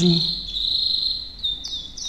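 High-pitched animal calls: a steady trill, then from about a second and a half in a quick run of short chirps, each falling in pitch.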